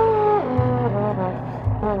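Trombone and trumpets playing a held note that slides down into shorter notes stepping downward, with a brief upward swoop near the end. Bass notes sound underneath.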